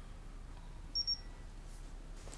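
Digital clinical thermometer beeping twice, two short high-pitched beeps about a second in, signalling that the temperature reading is done.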